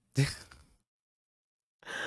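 A person's short breathy exhale, about a quarter second in.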